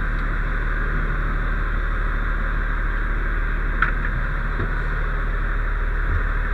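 Steady engine hum and cab noise heard from inside a fire engine's cab, with one short click about four seconds in.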